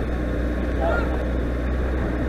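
Honda CBR600RR inline-four engine running steadily at low speed in traffic, heard from the rider's helmet camera with road noise.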